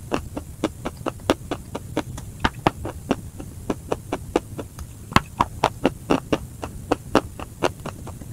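Close-miked crunching as chalk-like white chunks are bitten and chewed: quick, irregular sharp crunches, several a second, over a low steady hum.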